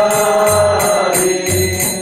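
Kirtan: a man singing a devotional chant in long held notes, with hand cymbals striking a steady beat and a low regular pulse beneath.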